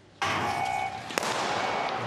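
Sprint start signal going off suddenly and ringing on with a steady tone, then a second sharp crack about a second later: the recall gun calling the runners back for a false start.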